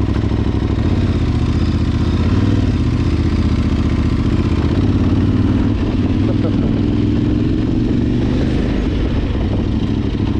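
Adventure motorcycle engine running as the bike pulls away from a stop and rides slowly on gravel, its note rising a little about halfway through.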